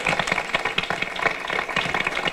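An audience applauding: many hands clapping in a dense, irregular patter.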